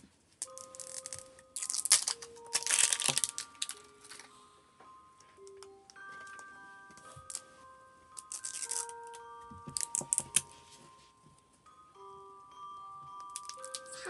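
Plastic wrapping of an L.O.L. Surprise ball being peeled and torn open in several short crinkling bursts, the loudest around two to three seconds in and again near ten seconds. Background music with a chiming melody of single notes plays throughout.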